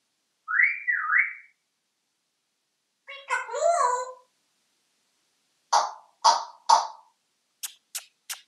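African grey parrot whistling two quick rising notes. About three seconds in comes a short gliding call, and near the end three harsh calls about half a second apart, followed by a few sharp clicks.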